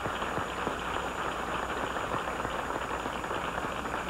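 Studio audience applauding, a steady dense clatter of many hands clapping.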